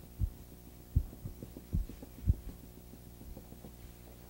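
A few soft, dull thumps, about four, over a steady low hum.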